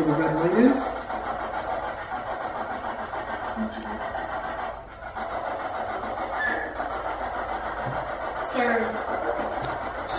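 Spirit box sweeping radio frequencies: a steady stream of static broken by garbled snatches of voice, with a clearer voice-like fragment near the end.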